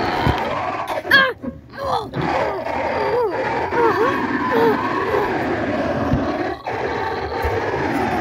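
A person's voice letting out cries and groans that rise and fall in pitch, over steady rustling and handling noise from a camera being jostled.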